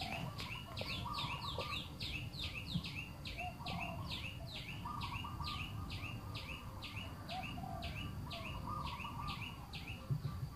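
A bird calling over and over in a fast, even series of high, downward-sliding notes, about two or three a second. Other lower bird chirps sound behind it, and there is a low rumble underneath.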